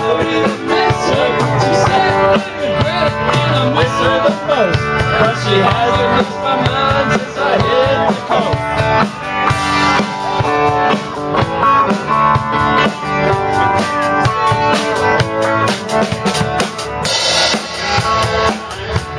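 Live rock band playing loudly, the drum kit prominent with regular bass drum and snare hits under the band's instruments.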